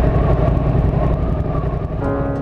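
Motorcycle on the move, heard through a bike-mounted GoPro: engine and wind noise as a steady low rumble.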